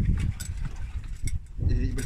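Low, steady rumble of a fishing boat's engine running, with scattered short knocks and clicks from handling on deck; a man's voice comes in near the end.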